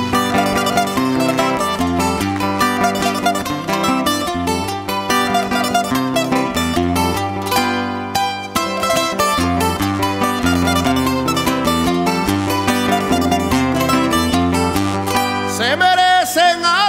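Instrumental interlude of a punto cubano played by a folk string ensemble: guitars and laúdes plucking a lively melody over a double bass line. A singing voice comes in at the very end.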